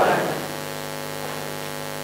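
A voice trails off in the first half second, leaving a steady electrical buzz-hum made of many evenly spaced tones.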